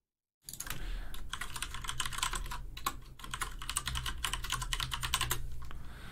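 Computer keys clicking rapidly and irregularly, like typing, starting about half a second in and running for about five seconds. A low steady hum sits under the clicks.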